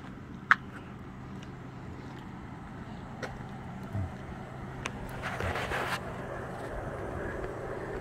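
A steady low motor hum, with a sharp click about half a second in and a brief hiss around five to six seconds in.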